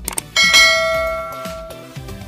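A couple of quick clicks, then a single bell chime that rings out and fades over about a second and a half: the notification-bell sound effect of a subscribe-button animation.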